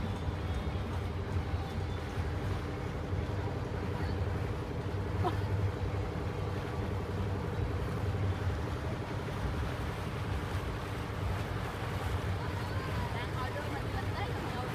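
A river boat's engine running steadily under way, a low, even drone with a steady hum above it.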